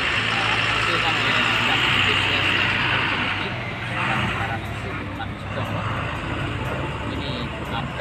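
Road traffic noise, loudest in the first three and a half seconds and then easing, over a steady low engine hum.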